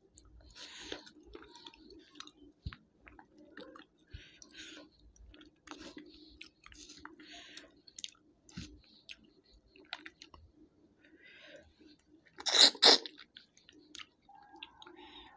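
Close-miked chewing and wet mouth sounds of someone eating rice and fish curry by hand, with many small clicks. Near the end, two loud, quick bursts stand out above the chewing.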